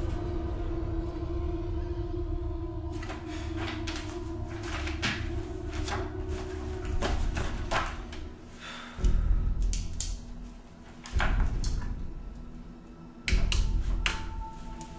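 Tense film score: a sustained drone, then deep booming hits about two seconds apart in the second half. Sharp rustles and clicks of papers being handled run over it.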